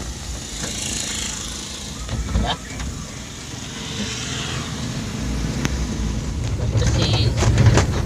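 Low rumble of a car's engine and tyres heard from inside the cabin, growing louder over the last few seconds as the car drives on. A rushing hiss passes in the first two seconds.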